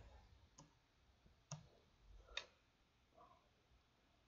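Near silence broken by three faint computer keyboard clicks about a second apart, as a letter is deleted from a typed search entry.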